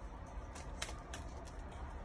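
Faint crinkles and small ticks of paper masking tape being handled and pulled apart by a toddler, over a low steady room hum.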